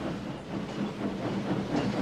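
Train rolling along the rails: a steady rumble with a low hum and faint clatter of the wagons, from a film soundtrack.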